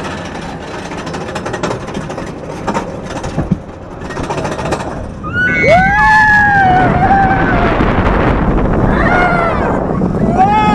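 Steel roller coaster car clattering up its vertical lift. About five seconds in, riders scream as it drops over the top, and loud wind rush and track rumble follow; a second round of screams comes near the end.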